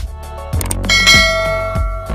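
A bright notification-bell ding sound effect that rings and fades over about a second, preceded by a short click, over background music with a steady beat.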